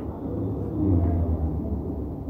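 A low, steady rumble that swells a little about a second in, with no speech over it.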